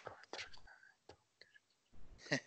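Near silence with a faint, low voice murmuring briefly in the first second, followed by a few soft ticks.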